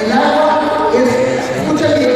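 Voices singing unaccompanied, with held notes that shift in pitch.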